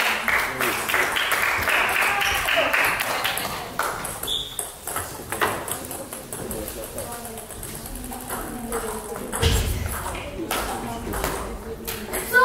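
Table tennis ball being played: quick, sharp clicks of bats striking it and the ball bouncing on the table, thick in the first few seconds and sparser later, ringing a little in a large hall. A dull thump comes late on, with low voices in the background.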